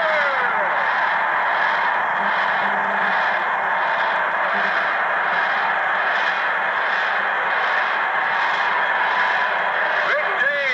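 Stadium crowd cheering loudly and steadily for a touchdown pass, heard over a radio broadcast.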